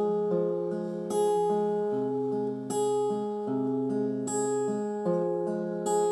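Steel-string acoustic guitar fingerpicked: a repeating arpeggiated pattern of ringing notes over a moving bass line, with a stronger accented pluck about every one and a half seconds.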